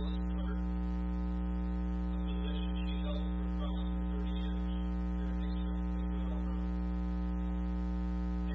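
Loud, steady electrical mains hum on the sound track, with a low buzz and many evenly spaced overtones. It drowns out the faint voice coming through the podium microphone.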